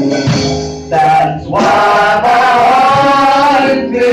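A woman singing a gospel song into a handheld microphone over instrumental accompaniment, holding one long note through the second half.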